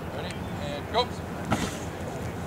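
Outdoor field ambience with faint voices, a short shout about a second in, then a single sharp smack half a second later as two football linemen collide in a one-on-one blocking drill.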